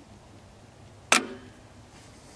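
A single sharp metallic snap about a second in, ringing briefly: the magneto on a Fuller & Johnson hit-and-miss engine tripping as the engine is turned over slowly, the moment used to check ignition timing with the spark advance lever in retard.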